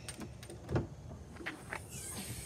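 A car hood being opened: a dull thump about a second in, then a couple of light clicks from the latch and hood.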